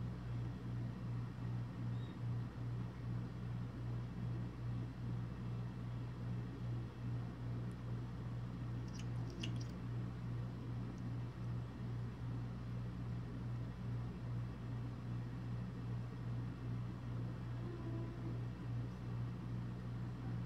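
A steady low electrical hum fills the room, with a few faint clicks about nine seconds in as liquid lipstick is brushed onto the lips.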